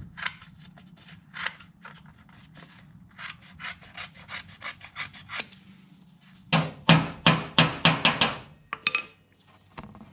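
Scissors cutting through a sheet of cardboard in a series of short, crunchy snips, lighter at first, then a louder, quicker run of about four snips a second from about six and a half seconds in.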